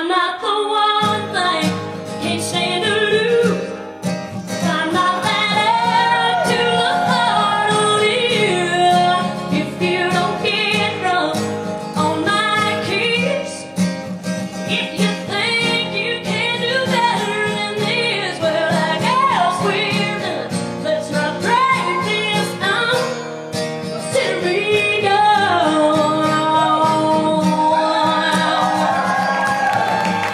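A woman singing a country song live with acoustic guitar accompaniment.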